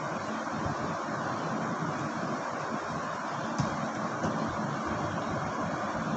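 Steady, hiss-like background noise with no speech, broken by two faint clicks a little past the middle.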